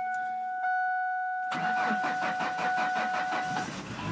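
Cold start of a 1998 Ford Ranger's 2.5-litre four-cylinder after sitting over a week in freezing weather: the starter cranks it with a rapid, even beat for about two seconds, and the engine catches near the end. A steady high tone sounds through the cranking and stops as the engine catches.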